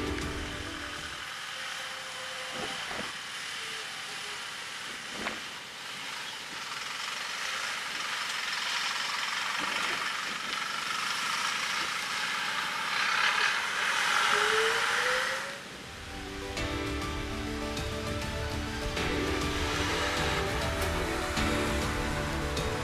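Mitsubishi Fuso Rosa minibus driving past with its diesel engine running, the low end of the sound cut away by a filter and mixed with wind noise. It grows to its loudest as the bus passes about 13 to 15 seconds in, then cuts off suddenly as background music comes back.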